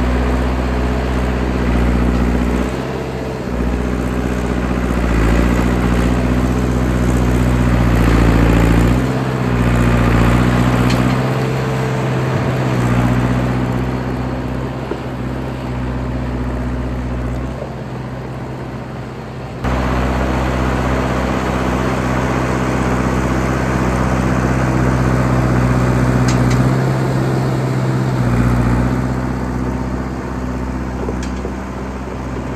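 Old crawler bulldozer's engine running steadily under load as the blade pushes snow. Its pitch sags and recovers a few times between about five and ten seconds in, and the sound gets suddenly louder about twenty seconds in.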